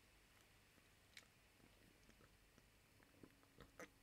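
Near silence with a person drinking: a few faint small clicks and swallowing sounds, one about a second in and a few more near the end.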